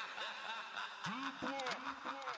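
Short, repeated vocal calls, each rising and then falling in pitch, several overlapping about halfway through, over a fast, even ticking beat.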